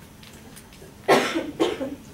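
A person coughing twice: a loud, sudden cough about a second in, then a second, shorter cough right after it.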